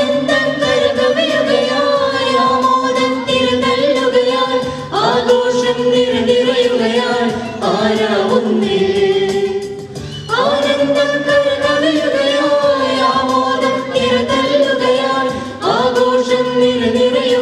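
Mixed choir of women and men singing a Christmas carol into microphones, in long held phrases, with a new phrase starting about every five seconds.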